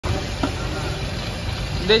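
Steady roadside traffic noise: a low engine rumble from cars on the road, with a short click about half a second in.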